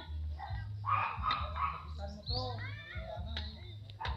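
A baby's high-pitched wordless vocalizing: several short babbling and squealing calls that bend up and down in pitch, over a low hum.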